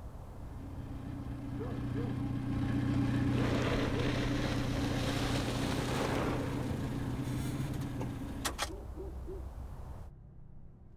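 A vehicle engine hums steadily and cuts off about eight and a half seconds in, with a couple of sharp clicks as it stops. In the middle, a passing car's tyre noise on the road swells and fades.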